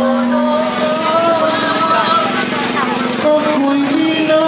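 Motorcycle engine running close by amid crowd voices, with long held sung notes over it.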